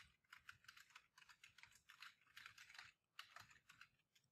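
Faint typing on a computer keyboard: a quick, uneven run of key clicks, pausing briefly about three seconds in.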